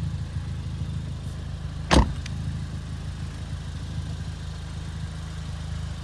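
Ford Fiesta ST-2 engine idling steadily through its Scorpion aftermarket exhaust, with one sharp knock about two seconds in.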